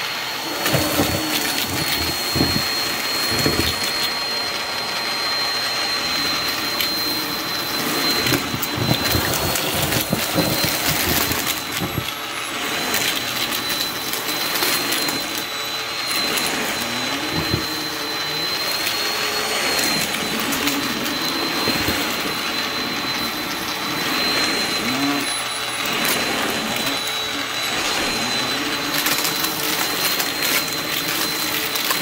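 Bissell CleanView bagless upright vacuum running steadily, with a high motor whine. Frequent clicks and rattles come through as confetti, glitter and balloon scraps are sucked up off a shag rug.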